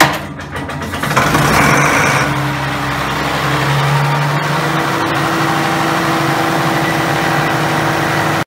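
A ship's auxiliary diesel engine started with a spring starter: the spring lets go suddenly and spins the engine in fast strokes, it catches about a second in, picks up speed and settles into a steady run.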